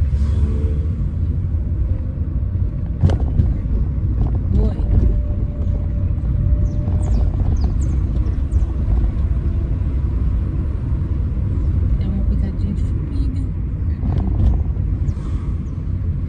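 Car interior while driving: a steady low rumble of engine and road noise through the cabin, with a sharp knock about three seconds in.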